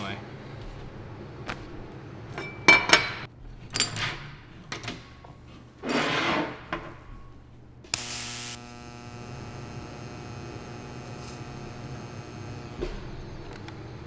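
A few short knocks and rustles of gear being handled, then about eight seconds in a TIG welding arc strikes with a brief crackling burst and runs with a steady buzzing hum for about four seconds before cutting off with a click. The arc is running at about 85 amps, too little heat for this weld.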